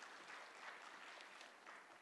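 Faint audience applause, a dense patter of many hands clapping.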